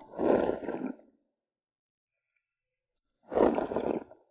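Someone slurping thin rice porridge from the rim of a bowl: two slurps about a second long each, the first at the start and the second about three seconds in.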